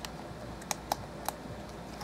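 Four short, sharp clicks as a comic book in a plastic bag and backing board is gripped and lifted from its display stand.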